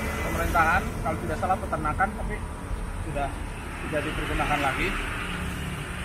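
A low, steady engine rumble of motor traffic, with indistinct voices over it.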